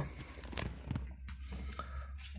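Quiet truck cab before the engine is started: faint rustling and a few small clicks from handling, over a low steady hum.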